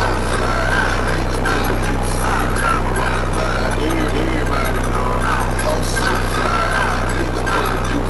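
Music with a deep, steady bass from a car audio system, over people talking in a crowd.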